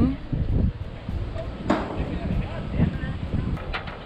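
Wind buffeting the camera's microphone in uneven gusts, with faint, indistinct voices underneath and a sudden rush of noise a little under two seconds in.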